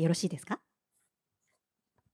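Speech that breaks off about half a second in, followed by near silence.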